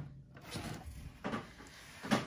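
Soft handling sounds of a Ford car cassette radio being slid and set on a wooden table top: a couple of faint knocks and scrapes.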